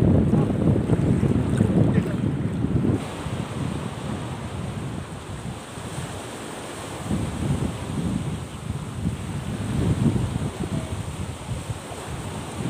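Sea surf with wind on the microphone. For about three seconds there is a loud wind rumble out on the water. It then drops suddenly to waves washing onto a pebble-and-rock shore, swelling a few times.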